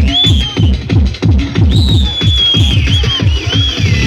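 Loud tekno played over a free-party sound system: a fast, driving kick-drum beat under a high synth line that slides and wobbles in pitch.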